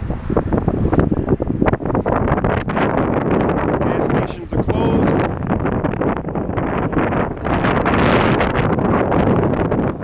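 Strong storm wind buffeting the microphone: a loud, uneven rush that rises and falls in gusts.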